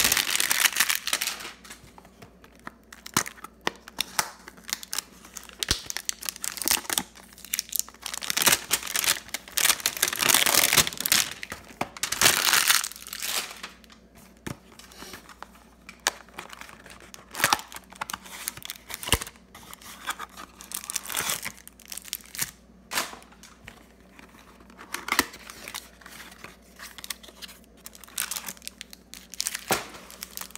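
Cardboard Topps hanger boxes of baseball cards being torn open, and the cellophane-wrapped card stacks inside crinkling in the hands. It comes in irregular bursts of tearing and rustling with scattered clicks, the longest between about 8 and 13 seconds in.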